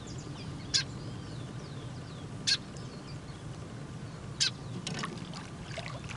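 Faint bird calls, short chirps, over a quiet background, with a few short sharp sounds: one about a second in, one midway, and a small cluster near the end.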